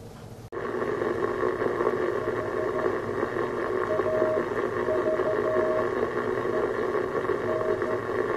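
Receiver audio from a homebrew Ugly Weekender 40-metre QRP transceiver, a direct-conversion set. Band noise hiss switches on suddenly about half a second in, and over it a Morse code (CW) signal keys on and off as a steady beat tone.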